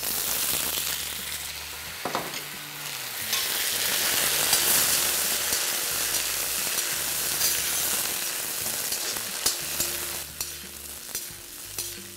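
Freshly added brinjal (eggplant) pieces sizzling in hot oil in a kadai with curry leaves, green chillies and peanuts, stirred with a perforated steel ladle. The sizzle is loudest mid-way, and scrapes and clicks of the ladle against the pan come more often near the end.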